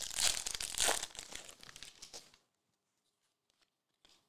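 Foil trading-card pack wrapper crinkling and tearing as it is peeled open by hand. The sound stops about two seconds in.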